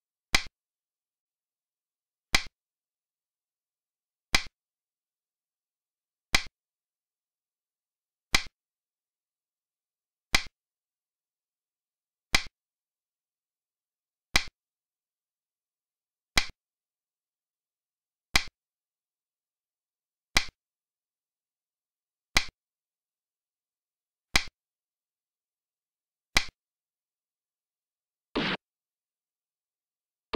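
Sharp click sound effect of a xiangqi piece being placed on the board, a quick double tap that repeats evenly every two seconds, fourteen times, one for each move played.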